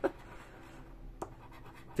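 Scratch-off lottery card being scraped with a small metal scratcher: a faint, steady scratching, with one sharp click a little past the middle.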